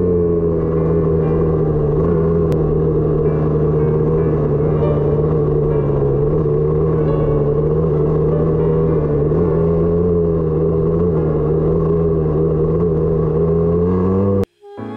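Husqvarna dirt bike's two-stroke engine running at steady, moderate revs while riding, its pitch wavering only slightly, heard close up from a mount on the bike.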